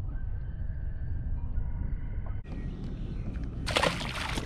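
Steady low wind rumble on the microphone, then near the end a short, loud splash as a largemouth bass is released back into the lake.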